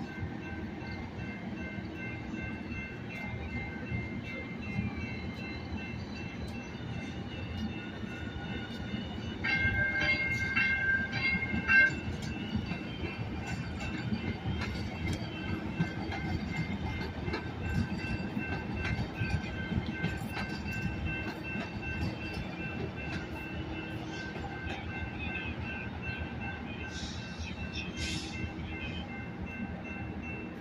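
Los Angeles Metro light rail train rolling past with a steady low rumble and faint high whine. About ten seconds in, a louder high chord sounds for about two seconds.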